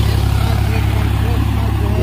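Farm tractor's diesel engine running steadily with a low, even drone as it pulls a harrow and plank through flooded paddy mud, puddling the field.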